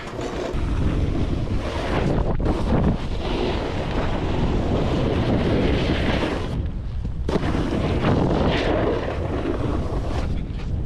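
Wind buffeting a body-mounted action camera's microphone as a snowboard rides down the slope, with the board scraping and hissing over the snow under a steady low rumble. The hiss thins out briefly about seven seconds in.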